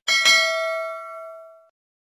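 Bell-like chime sound effect: a sharp strike that rings on with several clear tones and fades away after about a second and a half.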